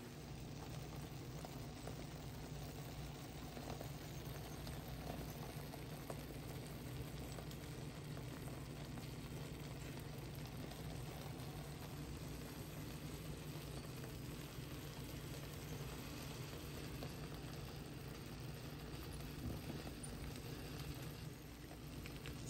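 Beans stewed with chorizo cooking in a frying pan on the stove: a faint, steady bubbling sizzle over a low hum.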